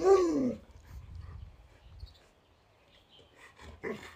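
Alaskan malamute giving a short 'talking' woo-woo call that falls in pitch over about half a second, the dog's answer to a question put to it. After that it is nearly quiet, and a brief short sound comes near the end.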